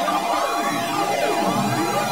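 Synthesized electronic sound from a Max/MSP patch played by hand movements tracked with a Kinect, run through a flanger effect. It is a dense wash of tones sweeping up and down in overlapping arcs.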